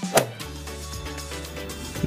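Background music, with one sharp hit sound effect a moment in: a golf club striking the ball.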